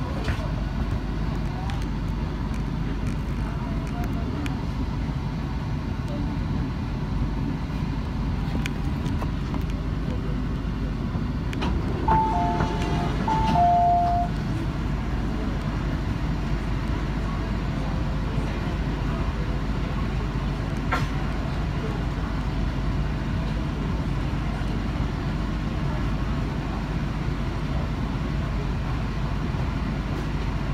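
Steady low hum of an MTR South Island Line train standing still at a red signal. About twelve seconds in, a two-note electronic chime, high then low, sounds twice.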